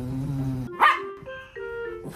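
A toy poodle barks once, sharply, about a second in, at a cat it is facing off with.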